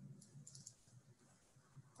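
A few faint computer mouse clicks in quick succession in the first half, over near silence.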